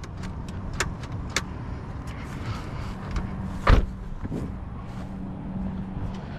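Light clicks and knocks around a parked car, with one heavier dull thump a little past halfway and a faint steady hum behind.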